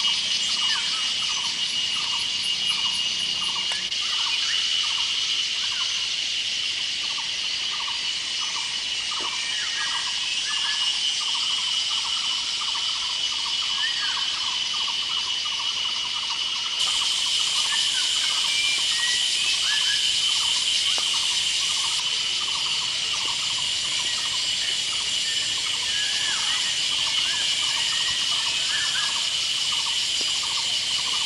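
A steady, shrill chorus of forest insects, with a quick, continuous train of short lower chirps beneath it; it gets a little louder about halfway through.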